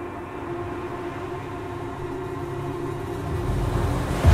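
A low rushing noise, like surf, swelling steadily louder, with faint held musical tones above it.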